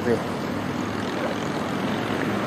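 Steady street traffic noise with a low engine hum running under it.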